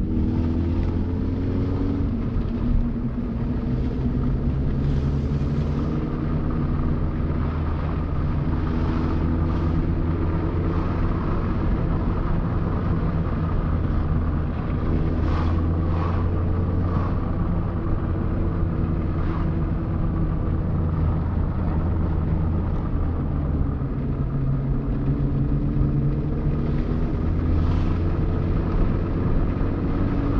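Car engine and tyre noise heard from inside the cabin while driving, a steady low drone whose pitch climbs as the car accelerates in the first couple of seconds and again near the end.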